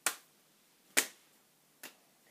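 Two children clapping each other's hands in a hand-clapping game, three sharp claps about a second apart, the last one fainter.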